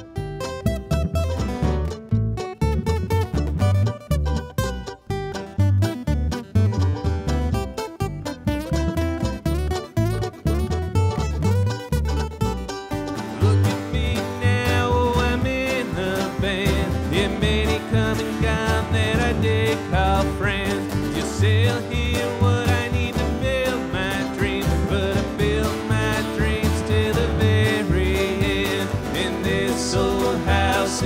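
Bluegrass string band playing on acoustic guitar, mandolin and upright bass, the bass plucking steadily underneath. Partway through, the music fills out and becomes denser.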